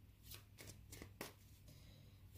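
A deck of cards being shuffled in the hands: a handful of faint, scattered card flicks.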